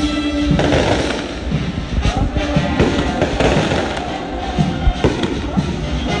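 Fireworks going off in a series of sharp bangs over a brass band playing in the street. The biggest bang comes about half a second in, with more around two, three and five seconds in.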